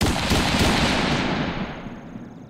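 Intro sound effect: a sudden crackling burst of noise that fades away over a couple of seconds.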